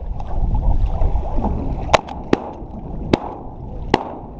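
Wind on the microphone and lake water lapping against a layout boat, with four sharp shotgun shots fired in about two seconds from the second half on.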